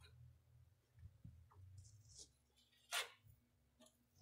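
Near silence: faint low room hum with a few faint clicks and one short burst of noise about three seconds in.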